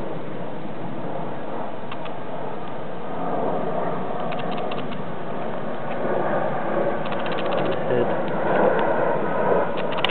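Steady background noise with indistinct voices, getting louder in the second half, and a few light clicks.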